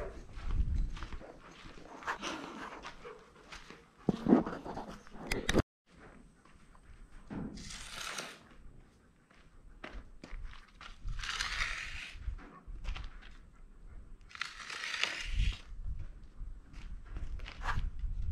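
Footsteps and a sharp knock on a dirt barn floor, then a wooden stick scraped through dry dirt three times, each scrape about a second long, drawing lines in the ground.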